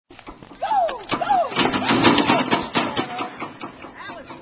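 Two short shouted calls, each rising then falling, then about a second and a half of loud, noisy splashing and voices as a large dog leaps off a pool diving board into the water. The noise fades away after about three seconds.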